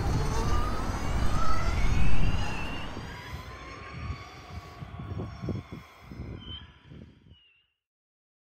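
Motorcycle riding away, its whine rising in pitch over the first couple of seconds, then fading into the distance, with wind rumble on the microphone. The sound cuts off suddenly near the end.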